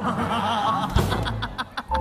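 Studio audience laughter and chuckling, with a single deep drum hit from the studio band about a second in.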